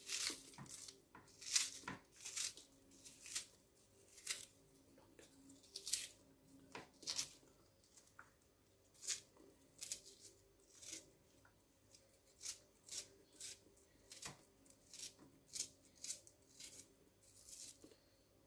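A kitchen knife slicing chunks off a raw onion held in the hand, each cut a short crisp crunch, about one or two a second.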